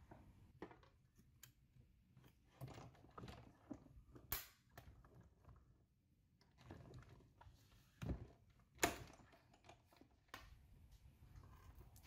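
Faint clicks and taps of metal dies, cardstock and clear acrylic cutting plates being handled on the platform of a hand-cranked die-cutting and embossing machine as it is fed through, with a few louder knocks about four, eight and nine seconds in.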